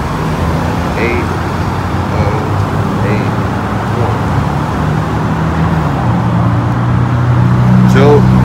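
Steady road traffic on a busy multi-lane street, with a vehicle engine's low hum building over the last few seconds.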